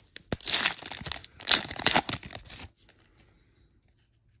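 A foil trading-card pack wrapper being torn open and crinkled in a few loud crackling bursts with a sharp click, stopping about two and a half seconds in.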